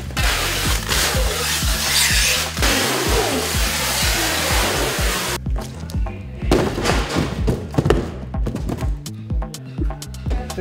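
Background music with a steady bass beat and a loud hiss that cuts off suddenly about five seconds in. After that, a stack of cardboard boxes topples over with a run of thuds.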